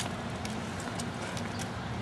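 Steady low outdoor background hum, like that of traffic or machinery, with a few faint light clicks scattered through it.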